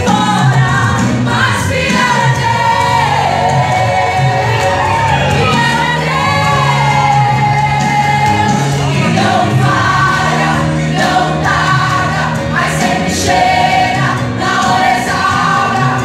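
Two women singing a Portuguese gospel duet into microphones, backed by a live church band with electric guitars and keyboard.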